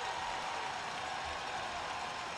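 Steady arena crowd noise in an ice hockey rink, with no clear single sound standing out.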